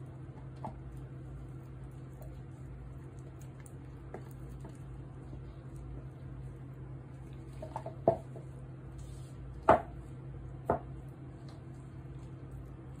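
Kitchen utensils and containers being handled, giving a few short knocks: three clear ones in the last four seconds, the middle one loudest, over a steady low hum.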